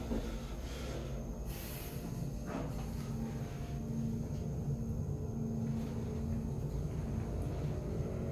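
KONE EcoDisc gearless traction lift car travelling down between floors, heard from inside the car: a steady low hum and rumble of the ride. A brief hiss comes about a second and a half in.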